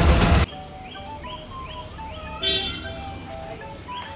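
Loud film-clip soundtrack that cuts off abruptly about half a second in, giving way to a light background music track with a simple stepped melody and short rising chirp-like notes, and a brief bright flourish about halfway through.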